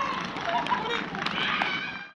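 Voices shouting and calling across an outdoor football pitch, fading out at the end.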